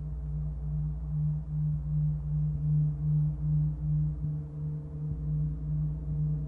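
Large gong played with felt mallets: a sustained low hum with a deep rumble beneath, swelling and fading about twice a second, with a higher overtone joining about halfway through.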